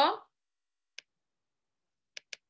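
The end of a woman's word, then dead silence broken once by a single short click about a second in.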